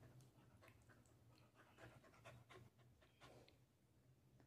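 Faint panting of a dog: soft, irregular breaths close by.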